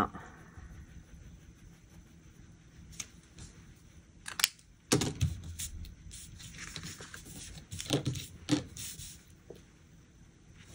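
Paper pages of a disc-bound planner being handled on a desk: a sharp click about four seconds in, a thump about five seconds in, then scattered rustles and taps of paper.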